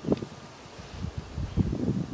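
Wind buffeting the microphone, a low irregular rumble that grows into stronger gusts in the second half.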